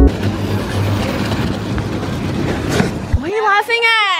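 Close-up scrubbing of a stiff plastic-bristled hand brush against a car's lower door panel: a steady rough scraping noise that stops a little over three seconds in. A person's voice follows near the end.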